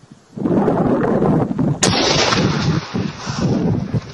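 Weapons fire aimed at a man on a riverbank: a heavy rumbling noise starts suddenly about half a second in, with one sharp crack a little before two seconds in, followed by continued loud noise.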